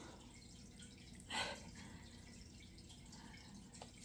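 Quiet room tone with one short, wet smacking sound about a second and a half in: a toddler eating oatmeal off a plastic spoon.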